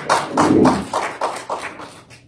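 Applause from a small congregation, with separate claps audible at about four or five a second, dying away near the end.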